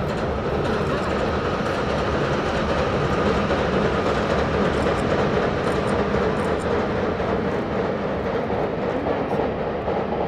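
JR West 201 series electric train crossing a steel truss railway bridge: a steady rumble of wheels on rails carried across the bridge.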